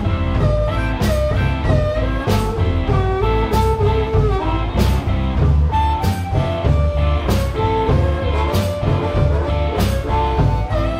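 Live blues-rock band playing an instrumental passage: a harmonica cupped to a vocal mic plays bending notes over electric guitar, bass and drums, with a drum and cymbal accent a little more than once a second.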